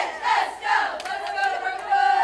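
A squad of cheerleaders shouting a cheer together in unison, the last word drawn out in one long call.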